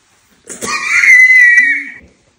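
A loud, high-pitched scream starting about half a second in and held for about a second and a half at a steady pitch.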